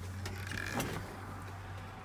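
A brief creak and click from a chrome steering-column lever on a truck being handled, about half a second to a second in, over a steady low hum.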